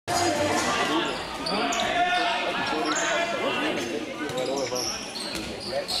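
A handball bouncing on a wooden sports-hall court under several people's voices calling out, with the echo of a large hall.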